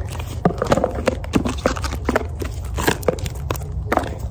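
Eight-inch-wide Flex Tape being unrolled and pulled off its roll, giving a run of irregular sticky crackles and ticks, several a second, over a low steady rumble.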